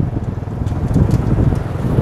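Street traffic noise: vehicle engines running close by, with wind buffeting the microphone as a low rumble.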